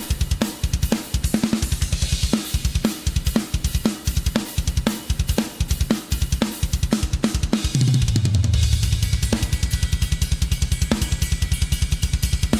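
Acoustic drum kit played in a solo: a fast, even stream of bass drum strokes under snare accents about every half second, with Meinl cymbals and hi-hat. A low note falls in pitch about eight seconds in.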